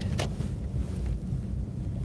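Low, steady rumble of a car's engine and running gear heard from inside the cabin as it moves slowly through a turn, with a single light click near the start.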